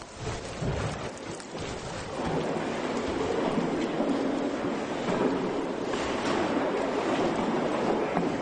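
Straw bale house shaking on an earthquake shake table: a dense rumbling and rattling that grows louder about two seconds in and then holds steady.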